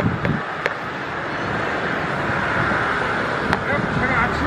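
City street ambience: a steady wash of traffic noise, with a few light clicks.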